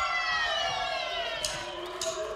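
A long, held tone with several overtones slides slowly down in pitch and fades. Near the end a lower tone begins to rise.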